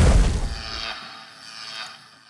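The fading tail of a cinematic boom sound effect from an intro logo sting. It dies away over about a second and a half, with a faint high shimmer in it.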